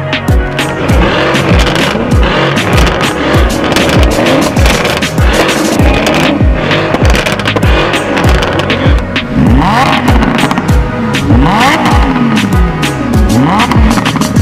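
Sports car engines revving again and again, their pitch rising and falling in quick sweeps, over hip-hop background music with a steady beat.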